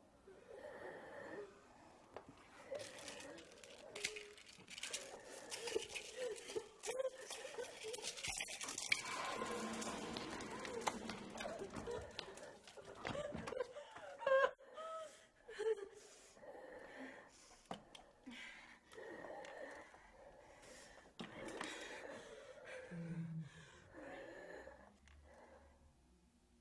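A person breathing hard and unevenly in gasps, loudest in a stretch around the middle.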